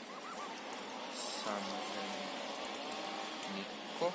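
Faint voices talking in the background, with a short crunch of snow being pressed between the hands about a second in.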